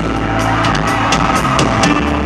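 Live band playing a steady groove under the stage talk: held bass and keyboard notes with regular cymbal strokes.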